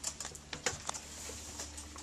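A few light clicks and taps of handling as the door of a fridge-style egg incubator is opened, over a faint steady hum.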